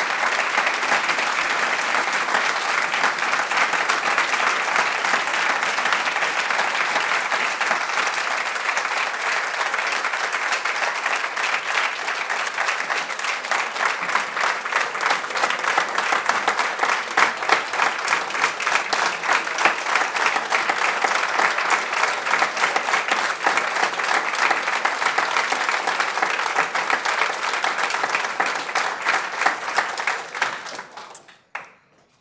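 A roomful of people applauding steadily, with individual claps standing out more in the second half and the applause dying away at the very end.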